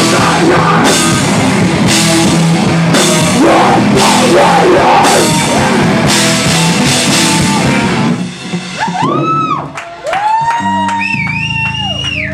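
Live heavy metal band playing loud: distorted electric guitars, bass, drum kit and vocals. About eight seconds in the full band stops and drawn-out guitar tones remain, ringing on and bending up and down in pitch like feedback as the song ends.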